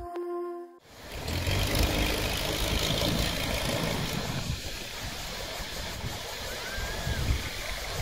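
Background music cuts out about a second in. A steady rushing outdoor noise with a low, uneven rumble follows: small waves washing onto a beach, with wind.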